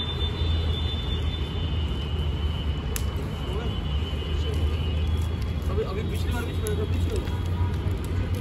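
Steady low background rumble with faint voices, and one sharp crack about three seconds in.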